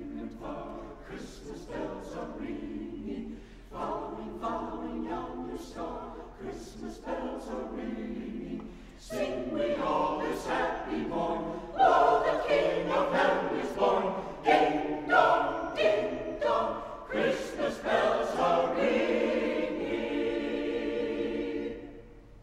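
Mixed-voice church choir singing a choral piece, softly at first and growing louder past the halfway mark, ending on a long held chord.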